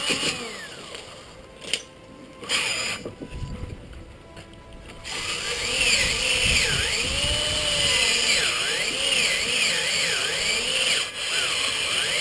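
Electric drill with a sanding disc attachment sanding surface rust off a cast iron rear brake disc, its motor whine dipping and recovering in pitch as it is pressed onto the disc. The sanding is quieter and broken for the first few seconds, then louder and steady from about five seconds in.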